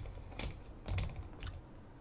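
Three or four soft clicks or taps, roughly half a second apart, over faint low room rumble.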